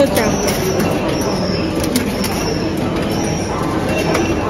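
Steady background noise of an indoor public space, with a faint high whine.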